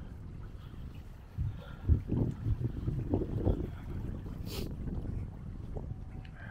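Wind buffeting the microphone: an uneven low rumble that picks up into stronger gusts about a second and a half in and eases after the middle. A brief high hiss comes just past the middle.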